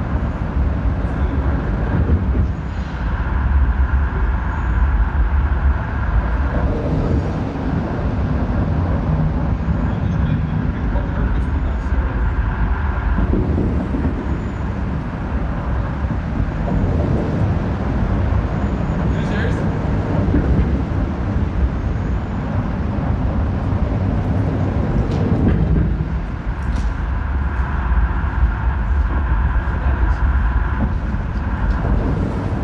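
Field-recording soundscape: a continuous deep rumble with a steady higher hum that comes and goes in stretches, and a few faint ticks.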